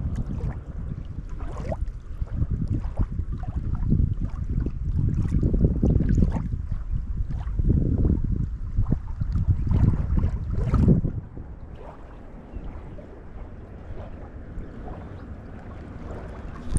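Wind buffeting the microphone in irregular low gusts, dropping to a quieter, steadier rush about eleven seconds in.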